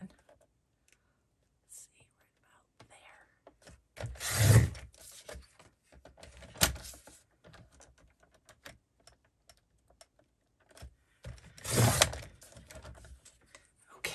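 Sliding paper trimmer cutting card stock: the blade is drawn along the rail twice, each cut a noisy stroke of about a second, with a sharp click between and paper being shuffled and repositioned.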